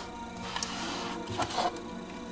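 A stack of thick card art prints being handled and slid on a wooden table, with a few light taps and paper rustles, over soft steady background music.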